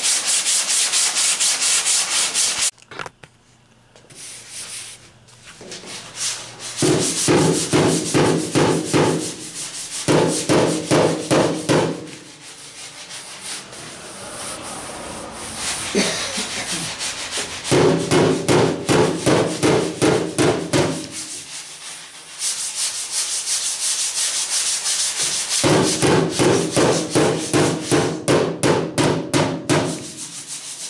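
Hand block sanding of FeatherFill G2 polyester primer on car body panels: sandpaper rasping in runs of quick back-and-forth strokes, about four a second, with a few quieter pauses between runs. The sanding takes the primer down to reveal low spots through the guide coat.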